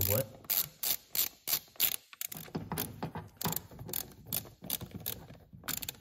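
Hand socket ratchet with an extension and a T30 Torx bit clicking as it is swung back and forth to loosen a throttle-body screw, a run of clicks about three a second with a short break about two seconds in. The screws are stiff because they are threaded into the plastic intake manifold.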